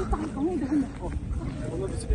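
Faint talking in the background, with scattered low thumps.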